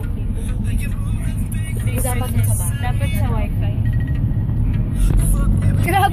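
Steady low engine and road rumble heard from inside a van's cabin, with children's voices over it.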